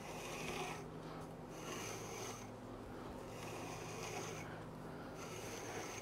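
Long flax fibres drawn through the steel pins of a hackle comb, giving a faint swishing rasp in four or five repeated strokes, about one every second and a half, as the tangled bundle is re-combed.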